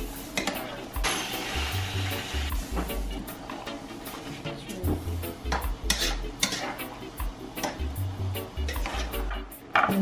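A metal spoon stirring and scraping rice in a pot on the stove, with a brief hiss about a second in as the rice goes into the hot pot. Background music with a steady bass line plays throughout.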